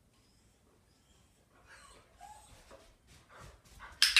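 A dog gives a short, faint whine about two seconds in, followed by a few soft knocks near the end.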